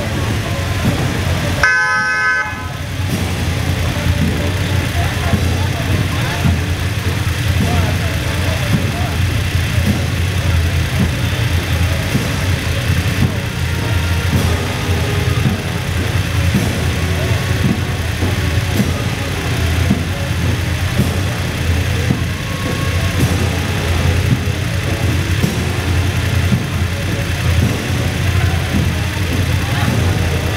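Engines of a column of police motorcycles running as they ride slowly past, a steady low rumble. A horn sounds once, briefly, about two seconds in.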